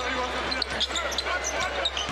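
Basketball being dribbled on a hardwood court, a run of repeated bounces, with short high sneaker squeaks from players moving on the floor.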